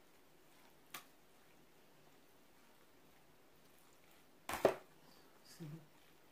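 Quiet stirring of macaroni and cheese in a disposable aluminium foil pan with a metal utensil: a small click about a second in and a sharp knock at about four and a half seconds, followed by a brief spoken word.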